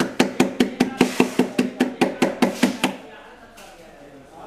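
Ceramic lamp base rocking on a tilted board as it is tipped by hand, its feet knocking against the board in a fast, even rhythm of about five knocks a second, each with a short ring. The knocking stops about three seconds in.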